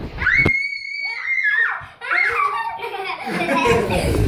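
Children shrieking at play: one long high scream held for about a second and a half near the start, then more excited squeals and shouting.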